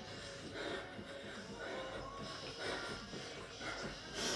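Faint heavy breathing from exertion and soft footfalls of a person jogging fast on the spot on carpet.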